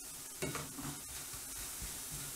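Metal tongs stirring and turning fried bread cubes in a frying pan, with faint scraping from about half a second in over a soft sizzle. The hob is off, and the sizzle is leftover moisture in the croutons steaming off in the pan's residual heat.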